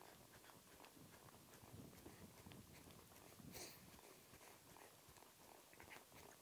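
Near silence, with faint hoofbeats of a horse trotting on a dirt arena and a brief soft hiss about halfway through.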